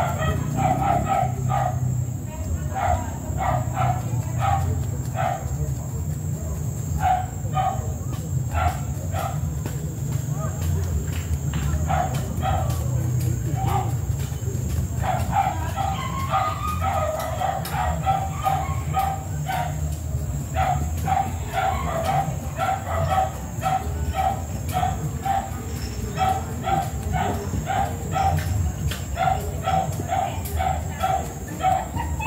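A dog barking in runs of short, rapid yelps, about three a second, over a steady low rumble and a thin, steady high-pitched whine.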